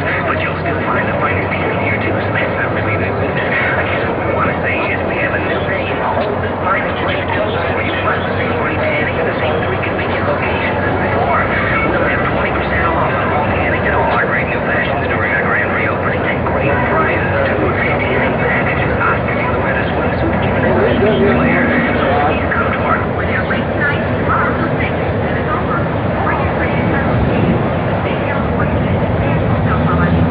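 Indistinct voices over a steady outdoor rumble and noise on the camcorder microphone, continuous and even in loudness throughout.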